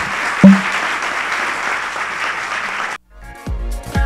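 Audience applauding, with a brief thump about half a second in. The applause cuts off abruptly about three seconds in, and electronic dance music with a steady thumping beat starts.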